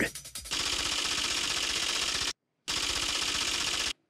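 A typing-style sound effect of rapid, even clattering, in two bursts (about 1.8 s, then about 1.2 s) each cut off into dead silence, laid under an on-screen caption as it appears.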